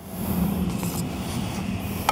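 A steady low rumble with a faint hiss above it, with no distinct knocks or tones.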